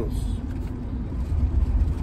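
Steady low rumble of road and engine noise heard from inside a car's cabin while driving.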